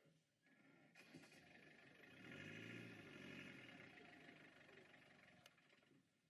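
Faint engine and tyre noise of a vehicle passing, swelling up over a couple of seconds and fading away again.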